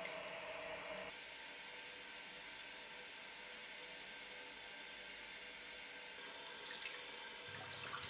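Kitchen tap running into a stainless steel sink, a steady hiss of falling water that comes in suddenly about a second in.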